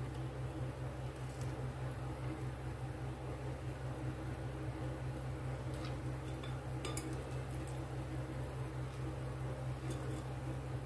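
Silicone spatula rubbing grape pulp through a stainless steel mesh sieve held over a glass bowl, with a few faint clicks of the sieve against the glass, over a steady low hum.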